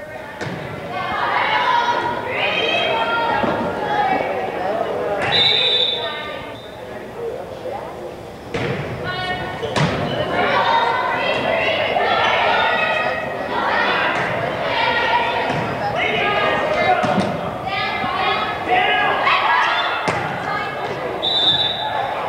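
Volleyball being played in a gymnasium: players and spectators shouting and cheering over the thumps of the ball. A referee's whistle gives a short blast twice, about five seconds in and again near the end.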